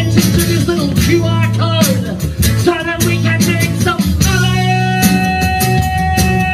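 Amplified acoustic-electric guitar playing a blues lead with bent notes over a steady electronic drum kit beat, then holding one long sustained note from about two-thirds of the way through.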